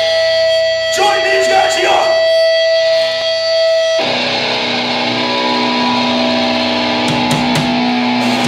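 Amplified electric guitar sustaining a ringing note, which switches suddenly to a lower held chord about four seconds in, with a voice briefly over the first couple of seconds.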